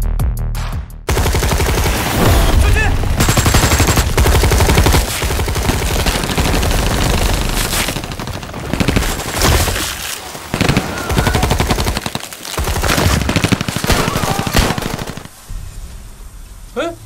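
Film soundtrack with long stretches of very rapid, dense gunfire-like cracks over music. The first second is an electronic jingle. The cracking breaks off briefly several times in the second half.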